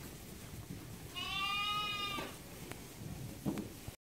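A lamb bleating once, a single long high call about a second in. Two short knocks follow near the end.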